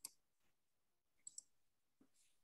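Near silence, broken a little over a second in by two faint, quick computer-mouse clicks.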